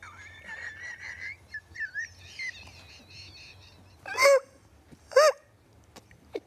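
A woman's high-pitched, squeaky laughter: thin wheezing squeaks at first, then two loud short squeals about four and five seconds in.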